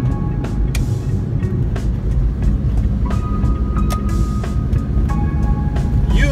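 Car cabin noise while driving, a steady low road and engine rumble. Soft background music with sustained notes comes and goes.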